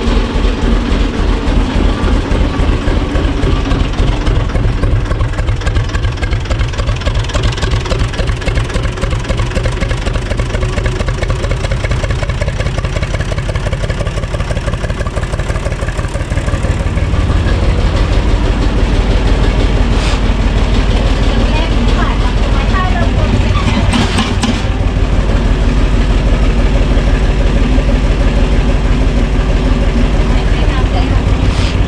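UTB tractor's diesel engine running at idle with an even low firing beat. About 17 seconds in it picks up speed and gets louder. A couple of short knocks come near the middle.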